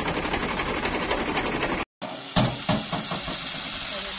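Farm engine running steadily. About two seconds in the sound cuts out for a moment, then there are a few sharp knocks and the engine runs on a little quieter.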